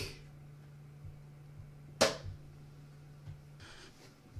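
Plastic lid of a PhoneSoap UV phone sanitizer snapping shut with a single sharp click about halfway through, over a faint steady low hum that stops near the end.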